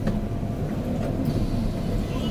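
Seoul Metro Line 2 subway train running, a steady low rumble heard from inside the car.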